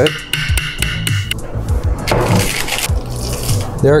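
Background music, with short rustling and scraping noises as a stainless-steel cooker pot is turned over and sticky cooked rice drops out onto a parchment-lined baking sheet.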